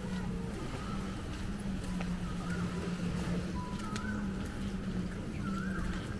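Beach ambience: a steady low hum from a distant motor under a constant rumble of wind and surf, with occasional faint, far-off voices.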